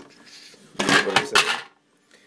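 A short burst of clattering and knocking about a second in, several quick hard knocks close together, as the wooden plank and plastic ramp of a homemade bucket mouse trap are handled.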